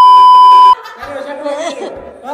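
A loud, steady test-tone beep added in the edit over a TV colour-bars screen, cutting off abruptly under a second in. Then people laughing and talking.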